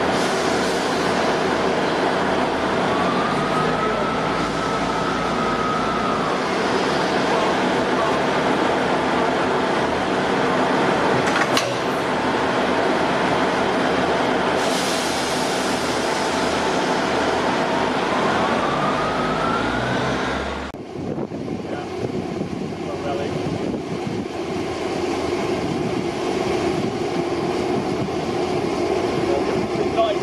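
Northern Sprinter diesel multiple units running at a steady drone as the two units are brought together and coupled, with a brief whining squeal twice and a single sharp clunk about a third of the way in. About two-thirds through the sound changes suddenly to a quieter, lower diesel rumble.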